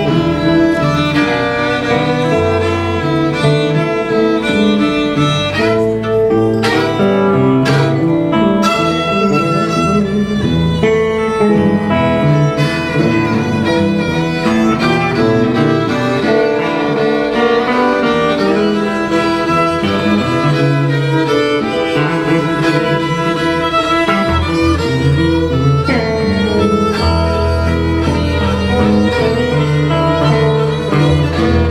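Live blues band playing: a violin (fiddle) bowing a lead line over electric guitar, with bass and drums behind. A heavy bass line comes up near the end.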